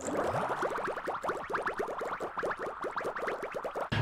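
Logo-sting sound effect: a quick run of short rising synthesized chirps, several a second, over a faint hiss, ending abruptly.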